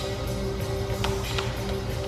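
Background song: held notes over a soft beat with light percussive ticks.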